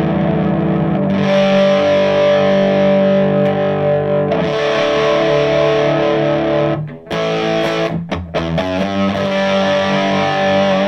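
Gibson Les Paul electric guitar through a Reinhardt MI-6 18-watt amp, its normal channel at full volume with power scaling turned all the way down: saturated, overdriven rock chords, each held a few seconds, with short stops about seven and eight seconds in.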